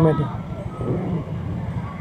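Low, steady rumble of a vehicle engine running at slow speed while parking.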